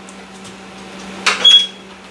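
Ninja Combi cooker with its tray slid back in and door shut with a short clatter about a second in, then a brief high beep, over the steady hum of the cooker running.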